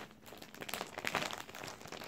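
Clear plastic packaging of a Match Attax trading-card starter pack crinkling as it is picked up and handled, in a rapid run of small crackles starting about half a second in.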